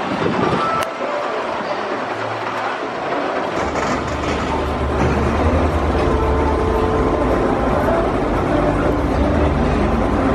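Gerstlauer spinning roller coaster car running on its steel track: a steady low rumble that starts about a third of the way in and carries on to the end, over general outdoor noise.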